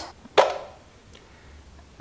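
One sharp plastic click about half a second in from the detachable dust canister of a handheld mattress vacuum being handled as it is opened, followed by faint handling noise.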